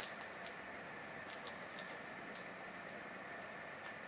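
Faint, scattered light clicks and rustles of hands folding and pressing wet wool pre-felt on a bubble-wrap felting surface, over a steady low hiss.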